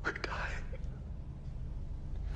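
A breathy whispered voice in the first half-second, over a steady low rumble.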